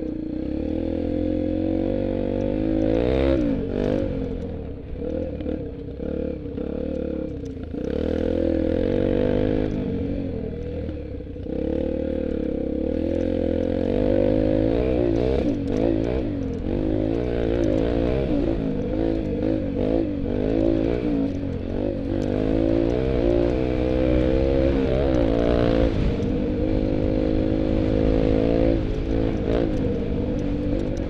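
Engine of a small off-road vehicle riding a dirt trail, its pitch rising and falling again and again as the throttle is opened and eased off. It eases off briefly a few seconds in and again around eleven seconds. Clattering and rattling from the bumps run through it.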